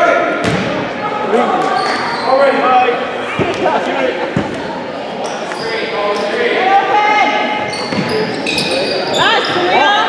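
Basketball game in a large gym: a ball bouncing on the hardwood floor a few times, with voices of players and spectators throughout.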